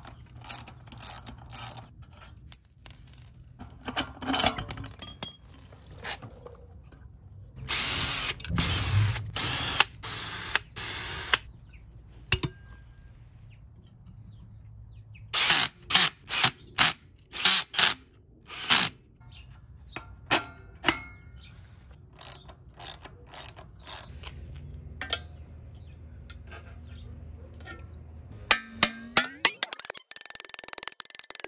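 Hand-tool and cordless-drill work on a pit-bike wheel: scattered clicks from a ratcheting wrench on the axle nut, with a dense run of clicking about eight seconds in. Around the middle, a Ryobi cordless drill/driver runs the brake-rotor bolts in several short loud runs.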